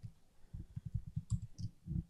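Computer keyboard being typed on: a quick, irregular run of faint key clicks, starting about half a second in, as a web address is entered.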